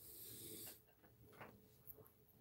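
Near silence, with a faint pencil stroke scratching lightly across drawing paper for the first moment or so, then two soft ticks.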